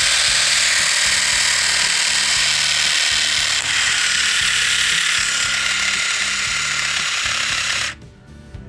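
Camry CR 2917 three-head rotary electric shaver running, a steady high buzz that cuts off suddenly at the very end.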